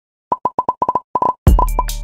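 A rapid string of short pitched pop sound effects, about a dozen in a second. A hip-hop beat with heavy bass kicks comes in about one and a half seconds in.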